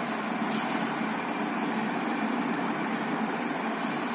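Steady hiss with a constant low hum coming from an Asus G531 laptop's internal speakers. This is the abnormal audio output of the speakers.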